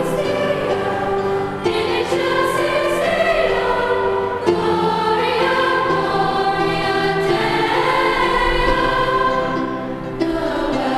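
Girls' choir singing slow, long-held chords that change every few seconds.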